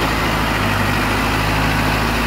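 Mahindra Arjun 555 DI tractor's diesel engine running steadily, with a low even hum, as the tractor drives forward in its original factory second gear.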